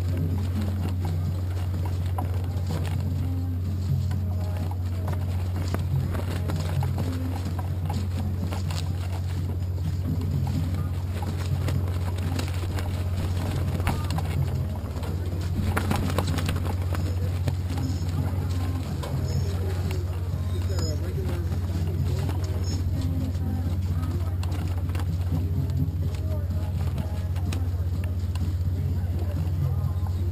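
A steady low hum that runs unchanged throughout, with faint voices talking in the background.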